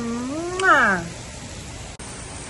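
A drawn-out, wordless sing-song voice: one long note that swells up and then glides down, fading out about a second in.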